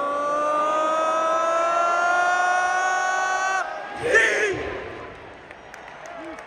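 A single voice close to the microphone holds one long yell whose pitch rises slowly for about four seconds, then cuts off. A short shout follows, over crowd noise in the arena.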